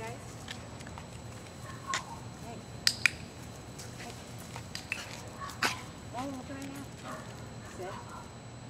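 Dog-training clicker clicking several times, the loudest a quick double click about three seconds in: the signal marking good behaviour for the terriers on the walk.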